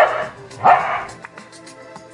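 A dog barks twice on cue, a trained "speak" answer to a spoken command. A short bark comes first and a louder one about half a second later.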